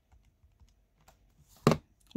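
Faint clicks of buttons being pressed on a Karce KC-S17 scientific calculator as a sum is keyed in, followed near the end by a short, louder noise.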